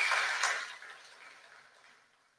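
A high steady tone that cuts off right at the start, then a soft hiss of noise in the hall that fades away within about a second, leaving near silence.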